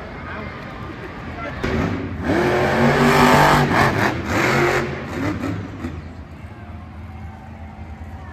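Grave Digger monster truck's supercharged V8 revving hard under acceleration as the truck takes a dirt ramp. It is loudest from about two to five seconds in, then eases off.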